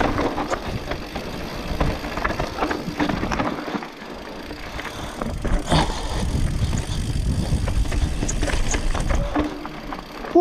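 Enduro mountain bike descending a rough dirt singletrack, heard from a camera riding on the bike or rider: a steady low rumble of tyres and wind on the microphone, with frequent clicks and rattles from the bike over bumps. It eases briefly about four seconds in, then picks up again.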